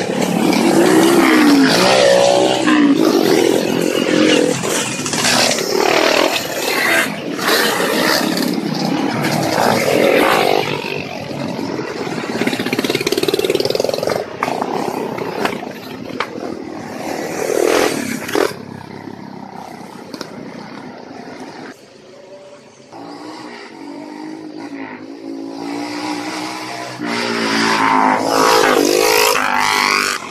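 Trail motorcycles riding past one after another at close range, each engine revving and rising then falling in pitch as it goes by. Around the middle the engines are quieter and more distant, then another bike passes close near the end.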